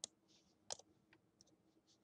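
Two faint, sharp computer mouse clicks about three-quarters of a second apart while the map is dragged, in near silence.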